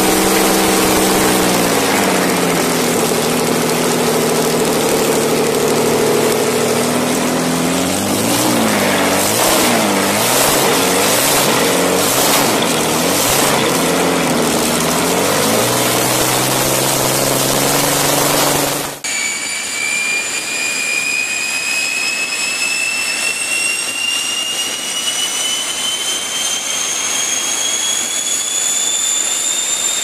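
Rolls-Royce Meteor tank engine, an unsupercharged V12, running on open stub exhausts, its revs dropping early on and then rising and falling unevenly for several seconds before settling higher. About two-thirds of the way through it gives way abruptly to the turbojets of a Gloster Meteor T7, a high whine rising steadily as the engines spool up.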